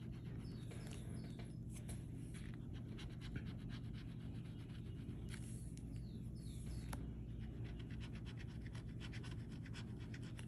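A metal bottle-opener scratcher scraping the coating off a scratch-off lottery ticket in a run of short, faint strokes.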